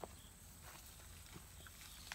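Near silence, with a faint low hum and a few soft, scattered taps of beagle puppies' paws moving over grass and concrete. A short click right at the start is the loudest sound.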